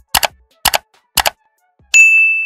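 Mouse-click sound effects: three quick double clicks about half a second apart, then a bright bell-like ding that rings on near the end, the sounds of an animated like-and-subscribe button.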